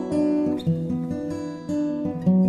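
Acoustic guitar strumming chords in a song's instrumental break, with no singing.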